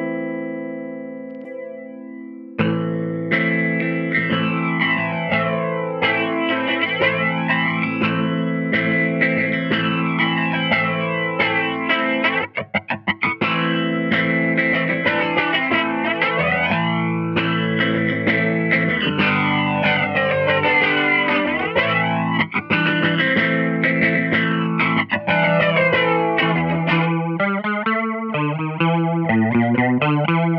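Electric guitar, a Gibson SG Standard through a Supro Super Tremo-Verb amp, played through an MXR Micro Flanger pedal: chords with a slow jet-like flanger sweep that rises and falls about every two seconds. Near the end the sweep speeds up into a faster wobble.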